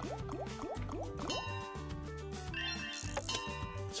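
Fishing-themed online slot game's music playing over a steady bass line, with a run of about five quick rising bubbly blips in the first second and a half as the reels spin on the bonus's final free spin.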